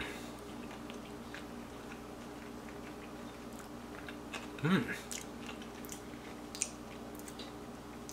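A person chewing a mouthful of cooked morel mushroom with the mouth closed: faint, soft, scattered clicks of chewing over a steady low hum, with an appreciative hummed "mm" about halfway through.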